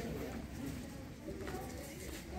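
A bird cooing in low, wavering calls, with faint voices behind it.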